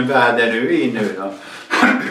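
A man's voice drawing out the word "I" for about a second, then a short, rasping burst of noise near the end.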